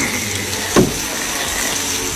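Steady loud hiss of snake meat sizzling on a wire grill over a wood fire, with a brief short sound about three-quarters of a second in.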